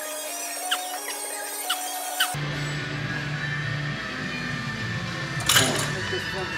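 Background music. For the first two seconds its bass is cut off, with three short squeaky rising sounds about a second apart, then the full beat drops back in.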